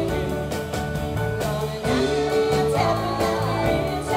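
Live band playing sixties pop: women's voices singing together into microphones over electric bass guitar and drums keeping a steady beat.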